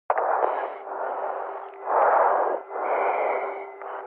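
Rushing static over a radio channel, swelling and fading in three or four waves, with a faint steady hum underneath.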